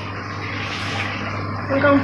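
Aquarium hang-on filter running: water splashing steadily from its outlet into the tank, with a steady low hum. A woman's voice starts speaking near the end.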